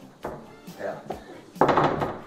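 Knocking with a fist on a wooden interior door, starting loudly near the end after a quieter stretch.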